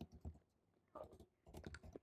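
Faint typing on a computer keyboard: a few keystrokes at the start, then a quick run of them in the second half.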